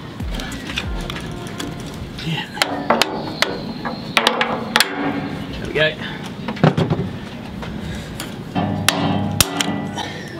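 A series of hard knocks on metal, starting about two and a half seconds in and coming again near the end, some followed by a brief ringing. These are strikes at a partly sawn jump collar on a boat's steel rudder shaft, trying to break it off.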